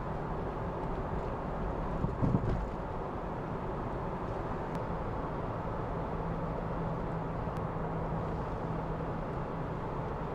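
Car being driven, with steady road and tyre noise and a low engine hum. A brief louder low rumble comes about two seconds in, and a steady low hum stands out in the second half.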